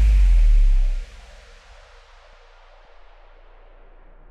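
Electronic hard house music: a loud deep bass tone that cuts off suddenly about a second in, leaving a hissing wash that fades and grows duller over the next few seconds.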